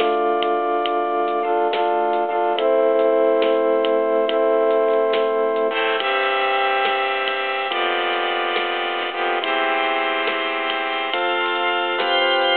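Gulbransen DH-100 digital hymnal playing a hymn in 3/4 time at 70 BPM through its built-in speakers: sustained chords in a flute voice, switching to a brass-section voice about halfway through and to a pipe-organ voice near the end, over a light ticking rhythm.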